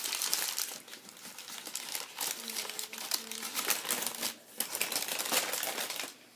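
White packing paper being crumpled and pulled away by hand, a dense run of crinkling and crackling that eases off briefly about a second in.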